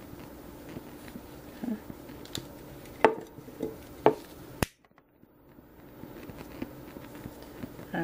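Quiet handling of a rope-wrapped glass vase and a lighter: a few sharp clicks and taps about three and four seconds in, then a sharper click followed by about a second of near silence.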